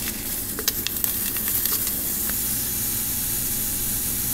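Powdered drink mix pouring from a paper packet into a plastic pitcher: a steady hiss, with a few crinkles from the packet in the first second.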